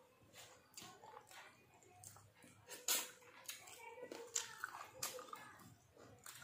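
A person chewing and eating by hand, with faint scattered mouth clicks and smacks, the sharpest a little under three seconds in.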